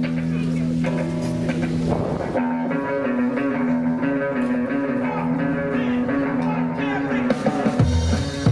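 Live rockabilly trio opening a song: an electric guitar holds sustained, slightly wavering chords. Near the end the drums and upright bass come in with a steady beat.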